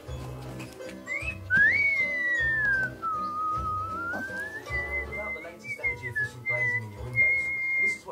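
A person whistling one long sliding note that starts about a second in: it rises, swoops down, climbs back up and wavers with short breaks, then holds steady and high near the end.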